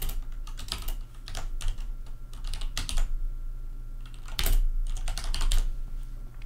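Typing on a computer keyboard: irregular key clicks, with a pause of about a second near the middle, then a quick run of keystrokes.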